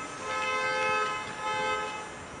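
A vehicle horn sounding a steady two-tone note, held about a second and a half with a brief dip partway through.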